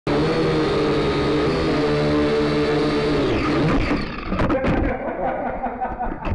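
A motor running steadily with several held pitches, which dies away about three seconds in, followed by a few sharp clicks and knocks.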